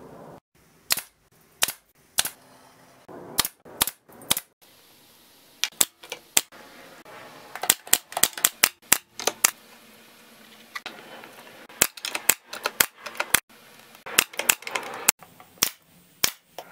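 Bostitch pneumatic nailer firing into thin plywood drawer parts: a string of sharp shots at uneven spacing, a few at first and then quick runs about halfway through and again near the end.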